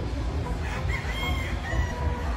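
A gamecock crowing once, a drawn-out call starting just under a second in, over a steady low background rumble.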